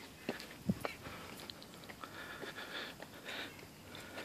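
Quiet footsteps and scuffs climbing stone steps: irregular light clicks, with a soft thump less than a second in.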